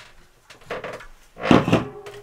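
Aluminium beverage cans being handled and set down on a wooden counter: a lighter knock about half a second to a second in, and a louder knock with a brief ringing about one and a half seconds in.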